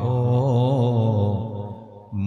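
A man's voice chanting an Urdu devotional verse, drawing out one long melodic note with a wavering ornament that fades near the end.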